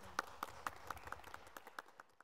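A few people clapping, sharp separate claps about four or five a second, fading out near the end.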